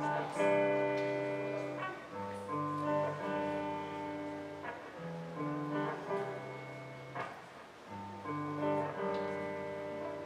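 Background music: an acoustic guitar playing slow chords, the chord changing about every two seconds.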